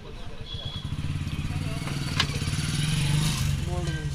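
A nearby vehicle engine running, a low pulsing rumble that grows louder through the middle, with a sharp click about two seconds in.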